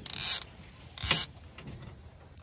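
Two short rasping scrapes, one at the start and one about a second in, as a rubber-mesh landing net holding a freshly caught striped bass is lowered onto an aluminum diamond-plate boat deck.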